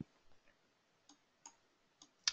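Near silence with a few faint, brief computer mouse clicks, one at the start and two more past the middle.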